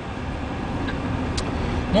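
Steady road and engine noise inside a moving car's cabin, with a faint click about one and a half seconds in.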